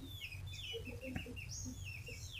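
Faint bird chirps: a string of short, high, downward-sliding notes repeating through the pause, with a few fainter low calls and a single click about halfway through.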